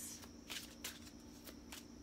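A tarot deck being shuffled by hand: a few short, soft card snaps spread through, over a faint steady hum.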